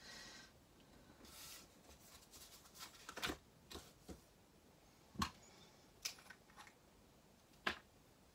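Sheets of card and patterned paper sliding and rustling on a craft mat. A few short, sharp clicks and taps follow, spread through, the last near the end, as pieces and tools are set down.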